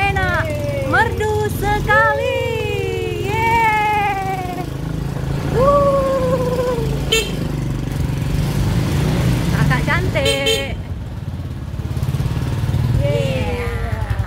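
Motorcycle engine running steadily as it rides along, with a high voice vocalising in gliding tones over it in the first few seconds and again near six seconds. A brief high-pitched tone sounds about ten seconds in.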